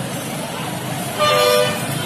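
A vehicle horn toots once, about a second in, for roughly half a second. It is the loudest thing over the steady noise of busy road traffic.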